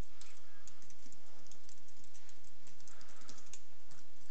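Typing on a computer keyboard: a run of key clicks at an uneven pace.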